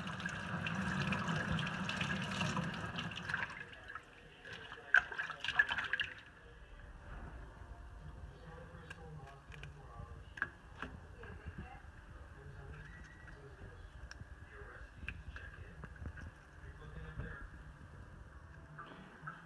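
Kitchen tap running with water splashing as wild leeks are rinsed clean of soil under it. A few sharp clicks and knocks come near the end of the running water, and the tap stops about six seconds in. Faint scattered clicks of handling follow.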